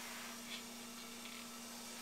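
Quiet room tone: a faint steady hum with a light hiss underneath, with no distinct event.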